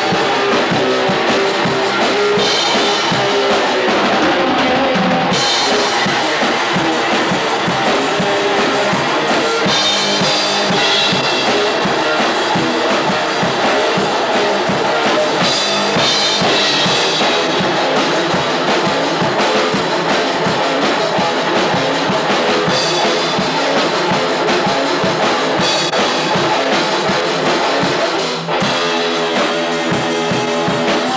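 A small metal band playing live: two electric guitars over a drum kit with cymbals and bass drum, loud throughout. Near the end the drums drop out and a guitar plays on alone.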